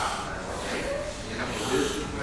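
Indistinct talking, with a short burst of breathy noise right at the start.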